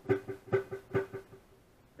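Telecaster-style electric guitar on the neck pickup, played through an Armoon PockRock pocket amp with slapback delay. The picked notes repeat about twice a second and die away a little past halfway.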